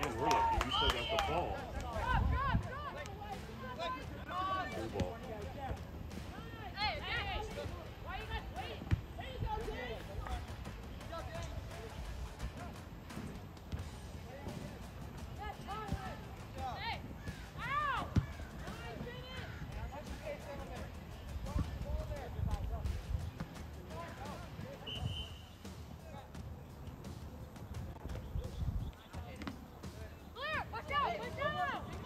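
Soccer match sound: scattered calls and shouts from players and onlookers, with a few thuds of the ball being kicked.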